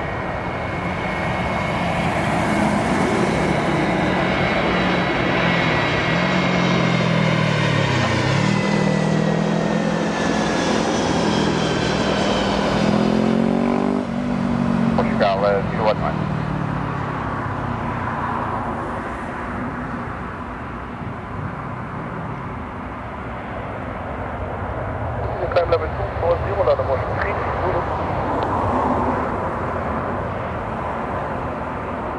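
Jet airliner passing low overhead on final approach with its gear down: a continuous engine roar with a whine that falls in pitch as it goes by, about a third of the way in. Afterwards the jet noise carries on at a lower level, with short bursts of a voice twice.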